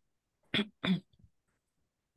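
Two short, sharp vocal sounds about a third of a second apart, each lasting a fraction of a second.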